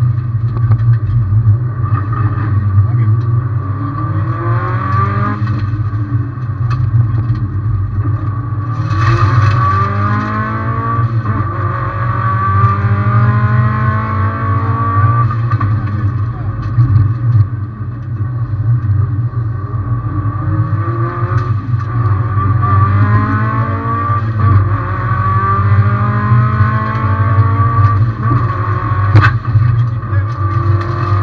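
Subaru WRX STI rally car's turbocharged flat-four engine pulling hard up the hill, its revs climbing and falling again and again as it shifts up through the gears, over a steady drone. A short hiss comes about nine seconds in and a sharp click near the end.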